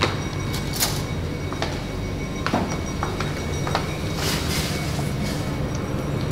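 Kitchen cookware and utensil noises: scattered sharp clicks and knocks over a steady low hum.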